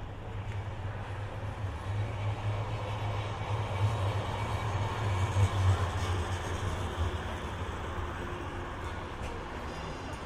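Manchester Metrolink tram (Bombardier Flexity Swift M5000) passing close by on street track: a low rumble that builds over the first few seconds, is loudest about five to six seconds in, and eases off after about seven seconds.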